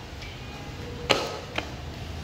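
Two sharp plastic clicks about half a second apart, a second in, from the frame or canopy of a lightweight umbrella stroller being handled.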